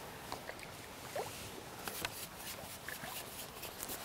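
Faint, light water splashing as a hooked mirror carp swirls at the surface, with small scattered ticks.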